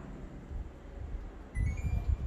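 Split air conditioner switching on by voice command: a short chime of brief beeps climbing in pitch, about one and a half seconds in, over low rumbling from the phone being moved.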